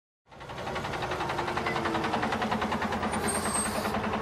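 An engine idling with an even, rapid pulse, fading in after a moment of silence. A brief high hiss comes a little after three seconds in.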